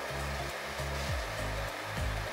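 Handheld butane gas torch hissing steadily as its blue flame heats a steel pliers nose to red heat, under background music with low notes.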